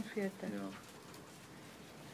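A person's voice saying "okay" once, drawn out, in the first second.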